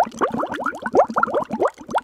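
Bubbling underwater sound effect: a rapid stream of bubbles, each a quick upward-gliding blip.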